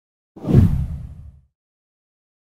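A deep whoosh transition sound effect that swells in quickly, peaks about half a second in, and fades out by about a second and a half.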